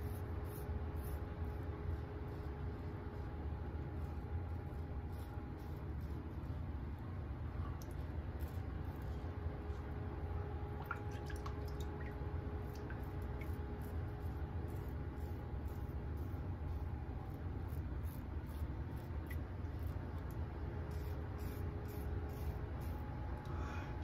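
Blackland Dart double-edge safety razor scraping through lathered stubble in many short strokes, over a steady low hum.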